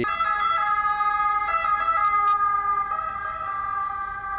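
Ambulance siren sounding as the ambulance drives past on an emergency call. Its tones hold steady, then sag slightly in pitch in the second half as it moves away.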